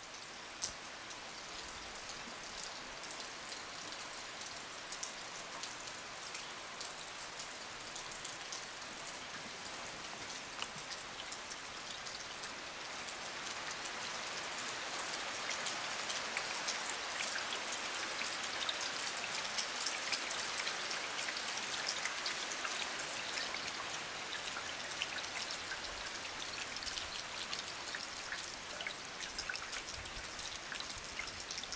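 Heavy rain falling: a steady hiss with many separate drops pattering. It grows a little louder about halfway through.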